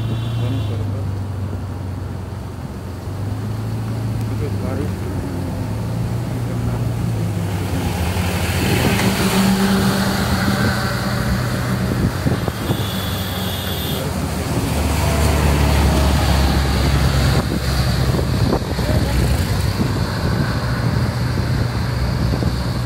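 Vehicle engine running at road speed on a wet road, its low drone shifting in pitch as the throttle changes. Road and wind noise swell from about eight seconds in.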